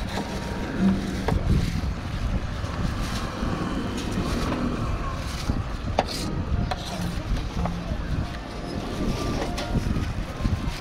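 Wind rumbling on the microphone throughout, with a few sharp knocks of a steel cleaver against a plastic cutting board as a pineapple is cut, the clearest about six seconds in.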